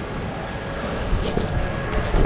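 Quick barefoot steps on a matted gym floor, ending in a low thud of the push-off into a jumping tornado kick near the end, over faint background music.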